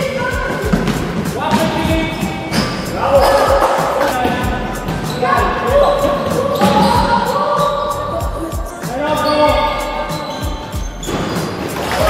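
Background music over a basketball bouncing on a wooden gym floor.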